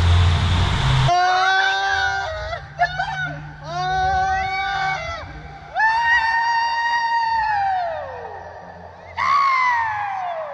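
Water rushing and splashing under a waterslide raft as it sets off. Then riders scream and yell in long held cries, several of them trailing off in a falling wail.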